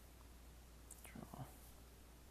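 Near silence with a low steady hum, broken about a second in by a brief faint murmur or whisper from a person, just after a tiny tick.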